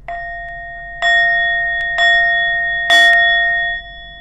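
A small metal meditation bell or chime struck four times, about once a second, each strike ringing the same bright tone; the fourth strike is the loudest, with a sharp click, and its ringing is cut off abruptly a little before the end. The chimes close a short guided breathing meditation.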